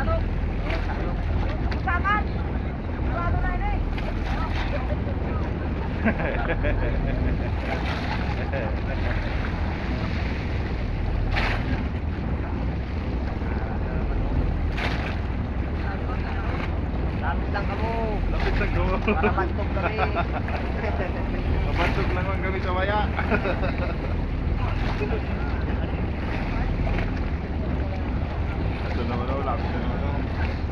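Wind buffeting the microphone over choppy sea water around an outrigger boat, with many voices calling and shouting across the water throughout and a few sharp knocks.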